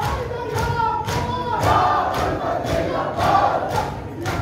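Shia mourners chanting a noha together in loud, wavering held notes, over steady rhythmic matam: hands striking chests about twice a second.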